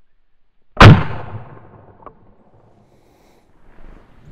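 A single shot from a Henry pump-action .22 rifle firing a .22 Short hollow point, about a second in, with a short echo dying away after it. A faint click follows about a second later.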